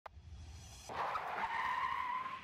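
Cartoon sound effect of a car skidding, a steady screech that starts about a second in, after a faint low hum.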